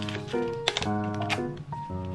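Background music: a melody of held notes changing every fraction of a second. Two sharp clicks sound over it, about a third and two thirds of the way through.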